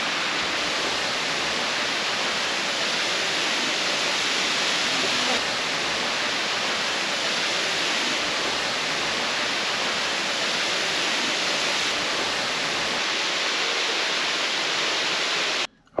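Marymere Falls: a waterfall's steady, unbroken rush of falling water. It cuts off suddenly just before the end.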